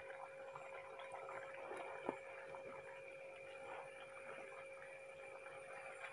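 Faint stirring of a thick, oily pickle mixture with a wooden spatula in a pan, with one soft knock about two seconds in, over a steady faint hum.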